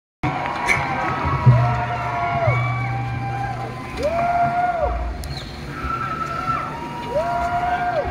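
Concert crowd cheering between songs, with long rising-and-falling calls from individual fans every few seconds. A steady low hum sounds from about a second and a half in, for about two seconds.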